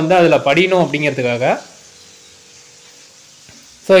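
A man's voice talking for about the first second and a half, then quiet room noise with a faint steady hum and a couple of soft ticks near the end.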